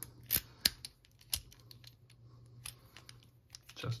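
Abus 83AL/45 aluminium padlock being worked with its key: two sharp metallic clicks within the first second, then a few fainter clicks of the key and shackle mechanism.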